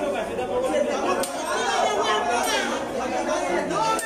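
Several people talking at once: indistinct voices overlapping in a hallway.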